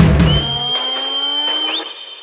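DJ remix of a Hindi film song: a heavy bass beat stops about two-thirds of a second in, leaving a held high-pitched effect tone over a slowly rising sweep, which fades out near the end in a break before the drop.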